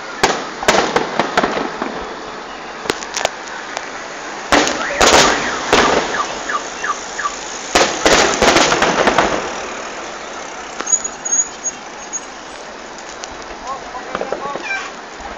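Fireworks bursting overhead: clusters of sharp bangs and crackles about a second in, again around four to six seconds and around eight to nine seconds, with fainter scattered pops afterwards.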